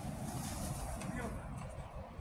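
Indistinct voices of people talking at a distance, over a steady low rumbling background noise.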